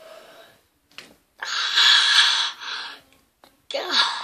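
A boy's loud, hoarse cry lasting about a second, then a shorter yell near the end, as he clutches his head after the pencil stunt.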